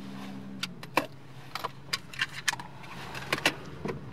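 Handling sounds in a car's cabin: a dozen or so scattered sharp clicks and light rattles as the driver puts down a sheet of paper and takes the steering wheel.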